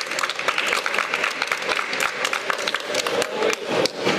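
Audience applauding: a dense, irregular patter of many hands clapping.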